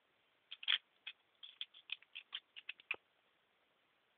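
A quick run of faint clicks and scrapes of a small toy bowl and spoon being handled as putty is scooped, about a dozen short sounds starting about half a second in and stopping near three seconds.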